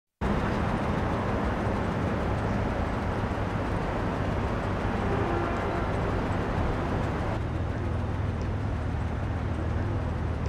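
A car engine idling, a steady low rumble with a wash of street noise; the top end of the noise dulls a little over seven seconds in.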